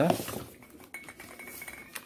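A few light clinks and knocks as a boxed aerosol body spray is handled and set down on a stone floor.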